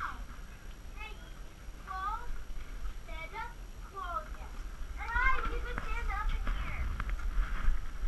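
Faint, indistinct voices of people talking nearby, in short pitch-bending phrases with no clear words and more of them near the end, over a steady low rumble.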